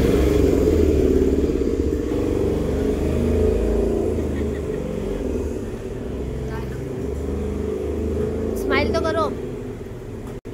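Indistinct voices and chatter over a steady low rumble, the background noise of a busy eatery. A brief high voice rises and falls near the end.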